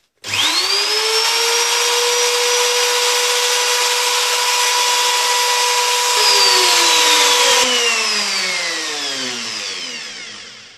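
Black & Decker electric router switched on, whining up to speed within a moment and running steadily, then switched off after about eight seconds and spinning down with a falling pitch. The bit is left to stop on its own rather than being lifted out while spinning, so as not to break a tooth of the wooden comb.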